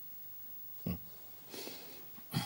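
A short, murmured "hmm" grunt about a second in, followed by a soft breathy hiss.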